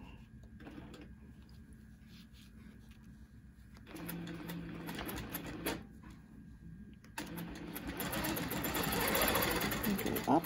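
Handi Quilter longarm quilting machine stitching along an acrylic ruler template. It is quiet at first, starts running about four seconds in, eases off briefly, and from about seven seconds runs faster and louder.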